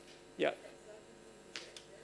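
A man's voice says a single short "yeah", then the room is quiet except for two faint, sharp clicks about a second later.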